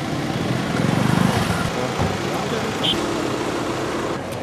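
A car's engine running as it drives up slowly, over the chatter of a crowd of men.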